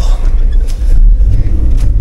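Low, steady rumble of a car's engine and road noise heard inside the cabin as the car moves, with a couple of faint clicks.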